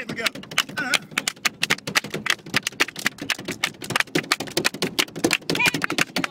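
Rapid, uneven claps and slaps, many strikes a second, with short vocal cries mixed in: the beat of a mock gospel shout dance.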